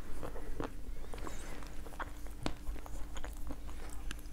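Biting and chewing a dense, dry chunk of edible clay of the 'Ryzhik' (Podsolnukh) variety: irregular sharp crunches and crackles as the piece splits under the teeth and is ground between them.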